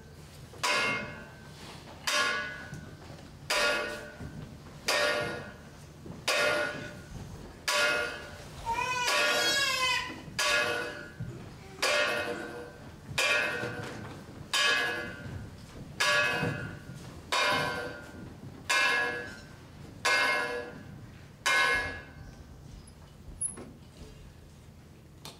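A bell struck again and again, about every one and a half seconds, each stroke ringing out and fading before the next. Around nine seconds in, a short warbling whistle-like tone wavers up and down over the strokes.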